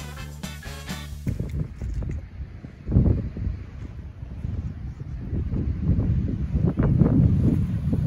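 Upbeat background music that cuts off about a second in, followed by wind buffeting the microphone in gusts that grow stronger toward the end.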